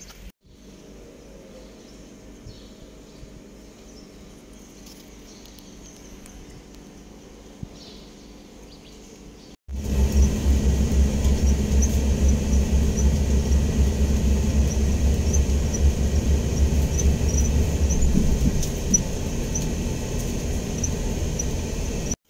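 Inside a moving shuttle bus: a steady heavy engine and road rumble, with faint light ticking at a regular pace high above it. Before that comes a quieter steady low hum.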